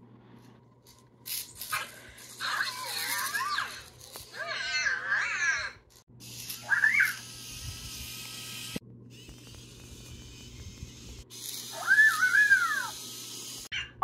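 A robotic toy pet making electronic chirping calls: four warbling, rising-and-falling cries spread over several seconds, the last near the end.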